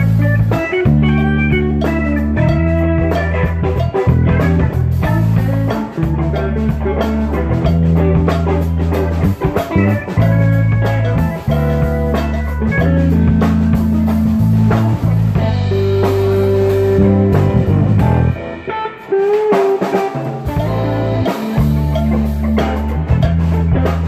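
Band music with guitar, bass and drums playing a bluesy groove. A single note is held for about two seconds past the middle, then the bass and drums drop out for a moment before the band comes back in.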